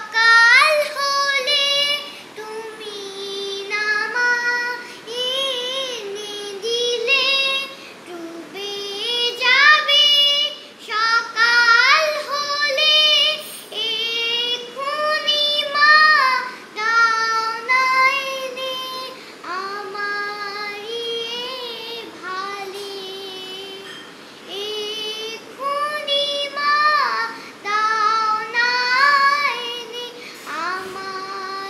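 A young girl singing a song solo without accompaniment, in melodic phrases of a few seconds with held, wavering notes and short breaths between them.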